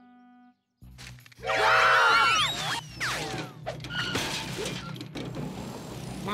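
Cartoon sound effects of a machine crashing and clattering, mixed with music. It starts about a second in, loudest soon after, with sounds sliding down in pitch.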